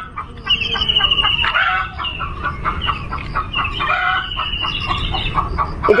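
Chickens clucking and calling with many short pitched calls and a couple of longer, wavering high notes, over the low scraping of a small hand hoe working soil between spring onions.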